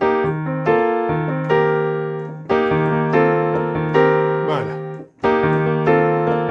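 Piano chords played slowly on a Nord Stage keyboard: several chords are struck and left to ring over a held bass note, moving from E-flat over B-flat to B-flat maj9sus4 over E-flat. The sound dies away briefly about five seconds in before the next chord.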